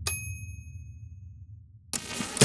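A bright ding sound effect: one sharp strike that leaves a high ringing tone, fading over about a second and a half, over a low rumble that dies away. A short sharp knock comes near the end.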